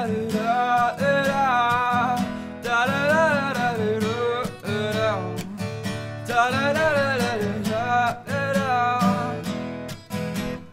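Strummed acoustic guitar with a man singing over it, the voice holding and bending notes in phrases of a second or two with short breaks between them.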